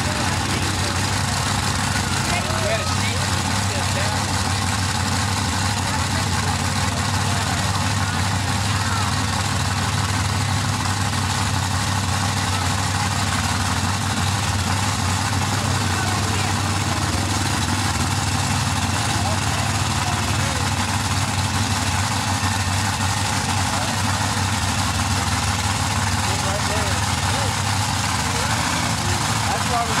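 Mega truck engine idling steadily and unchanging while staged for a run, with spectators talking over it.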